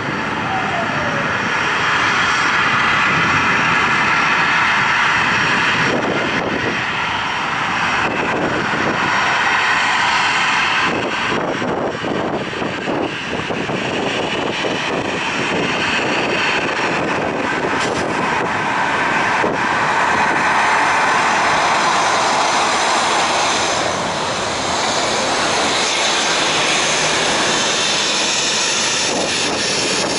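Jet engines of a Boeing 737-800 (CFM56-7B turbofans) running at high power: a loud, steady rush that swells and eases a little over the seconds.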